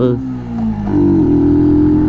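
Brixton Rayburn 125 motorcycle's single-cylinder engine running while riding, its pitch easing down through the first second, then holding steady.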